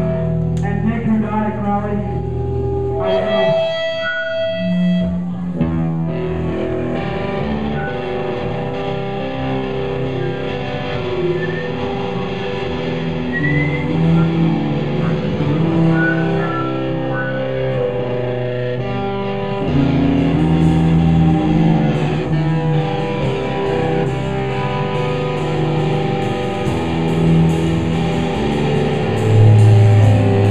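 A rock band playing live and loud: amplified electric guitar riffs with ringing, sustained notes. Cymbals and drums come in strongly about two-thirds of the way through.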